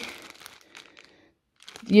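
Clear plastic bag of small Lego pieces crinkling faintly as it is handled, a few short rustles in the first second, then quiet.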